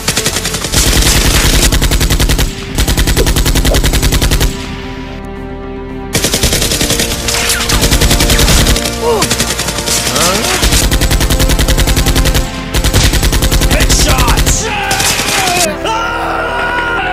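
Automatic-gunfire sound effect dubbed over Nerf blaster firing, in rapid bursts of about two seconds each, with a short break near the middle. Background music plays underneath.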